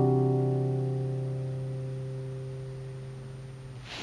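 The closing chord of a nylon-string classical guitar ringing out and slowly fading. The strings are damped by the hand just before the end, cutting the sound off suddenly.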